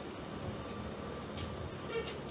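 Steady interior hum of a New Flyer DE60LFR diesel-electric hybrid articulated bus standing at a stop, with a short click about one and a half seconds in and a brief beep at the very end.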